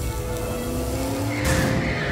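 Background music with an added cartoon sound effect: a steady hiss under a slowly rising tone, then a louder burst about a second and a half in.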